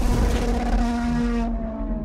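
Racing car engine sound effect laid under an animated title: a deep bass hit, then a held engine note that fades away, its upper part cutting off about a second and a half in.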